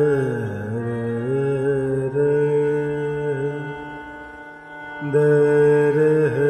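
Harmonium holding sustained reed notes under a male voice singing a slow wordless alaap, with a gliding fall in pitch in the first second. The sound fades about four seconds in and swells back about a second later.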